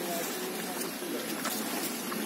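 A river in flood rushing fast under a bridge: a steady, even rush of water, with faint wavering pitched sounds behind it.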